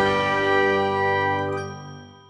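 Closing logo jingle: a held chord of several steady notes rings on and fades out near the end.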